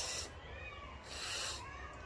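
A woman sucking air in sharply through her teeth, a hissing intake of breath, twice, the second longer, about a second in. She does it to cool a tooth aching from a bacterial infection.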